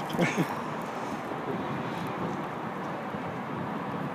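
Steady outdoor background noise, an even hiss, with a brief voice sound just at the start.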